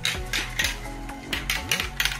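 Marbles clicking and clacking on a plastic marble run track, several sharp hits spread through the two seconds, over background music.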